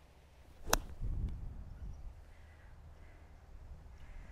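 A Lag Shot wedge striking a golf ball on a pitch shot: one sharp click about three-quarters of a second in, followed by low wind rumble on the microphone.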